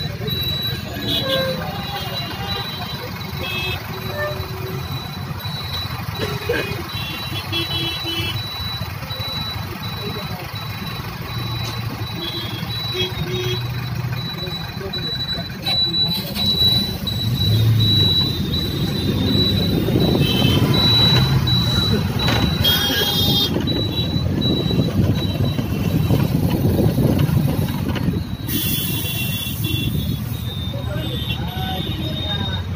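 Busy city road traffic heard from a moving vehicle: engines and tyre noise throughout, growing louder in the second half, with short car horn toots, clustered twice in the latter part.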